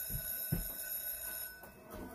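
A TV soundtrack's eerie sting: a sudden high, shimmering ringing chord with a couple of low thuds near the start, cutting off after about a second and a half, played through a TV's speakers.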